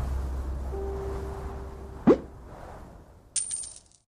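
The tail of a pop ballad's instrumental outro fades out. About two seconds in comes a short, sharp rising swoop, the loudest sound. Near the end a high, bright chime rings briefly: the sound effects of a video-editing app's end card.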